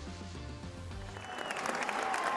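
A short stretch of music with low sustained notes; from about a second in, applause swells up and grows louder.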